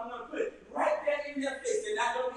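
Speech only: a man preaching.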